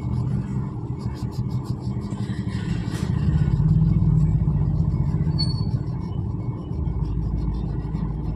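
A low rumble like a road vehicle going by, louder from about three seconds in, with short scratchy strokes of a wax crayon colouring on paper in the first second and a half.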